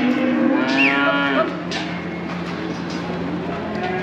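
Holstein heifer mooing: one long moo that ends about a second and a half in, over a steady low hum.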